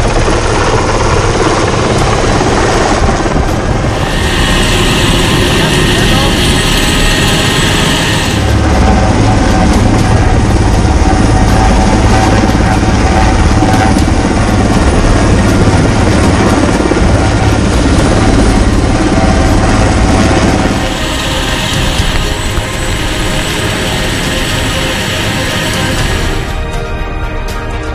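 Military transport helicopter hovering low and close overhead: steady, loud rotor and turbine noise throughout, easing off slightly about four-fifths of the way in.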